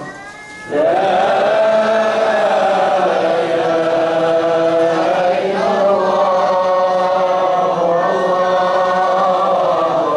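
Voices chanting together in long, drawn-out held notes that glide slowly in pitch, after a brief dip in the first second.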